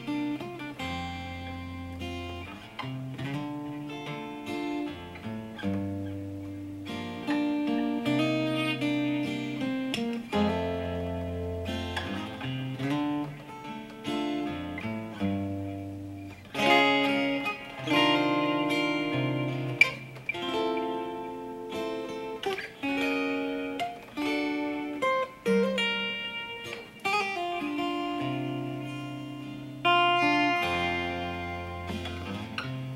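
Solo Takamine cutaway acoustic guitar played fingerstyle: plucked bass notes under chords and a picked melody line, in a slow, steady tune.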